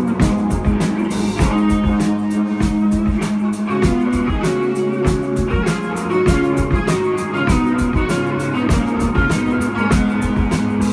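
Live rock band playing an instrumental passage: an electric guitar riff over a steady drum-kit beat, with no singing.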